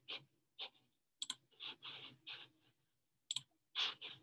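Scattered clicks from a computer mouse and keyboard: sharp double clicks about a second in and again after three seconds, among softer taps, with a louder one near the end.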